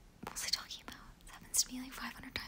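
A woman whispering a few words.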